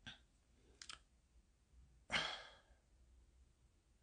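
A man sighing once, a breathy exhale about two seconds in that fades out, after a couple of faint clicks near the start.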